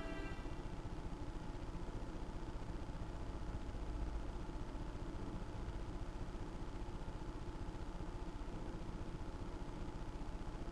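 Music fades out in the first moment, leaving a steady low rumble with a slight swell about four seconds in.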